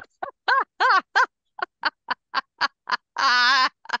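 A woman laughing hard: a quick string of short laugh bursts, about three a second, ending in one longer drawn-out laugh near the end.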